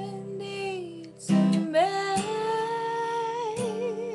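A woman singing long held notes with vibrato over accompanying chords struck about every two seconds; her voice breaks off briefly about a second in, then rises into the next held note.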